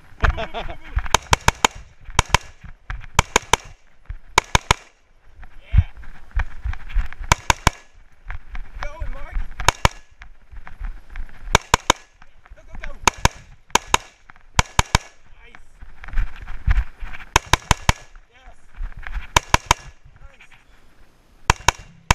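An AR-style semi-automatic rifle fired close up in quick pairs and occasional threes, a string about every one to two seconds, with rustling movement noise between the strings.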